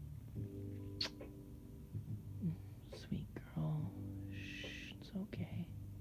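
A woman's voice making soft, wordless comforting sounds in several held, steady-pitched hums, broken by a few short mouth clicks. A brief hushing hiss comes about four and a half seconds in.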